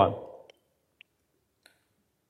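A man's spoken word trailing off, then three faint, short clicks spread over the next second or so.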